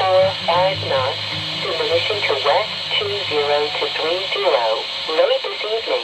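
A voice speaking over a marine VHF radio's speaker, thin and cut off in the highs over a steady hiss: a marine weather broadcast.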